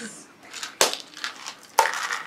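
Small plastic Barbie toy purse being handled: two sharp plastic clicks about a second apart.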